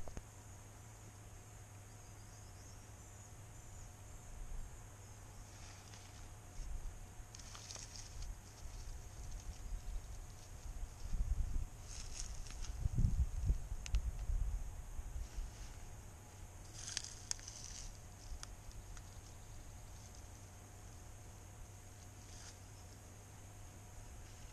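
Dry leaf litter and twigs rustling and snapping in scattered bursts as someone crouched on the forest floor works with his hands, with low rumbles of wind on the microphone, loudest about halfway through.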